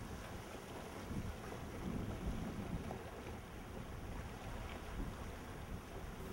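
Steady wind noise buffeting the microphone over open water, mostly a low rumble.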